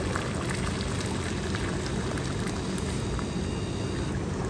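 Maple sap boiling hard in the pans of a 2x6 Smoky Lake Corsair evaporator: a steady, even bubbling rush.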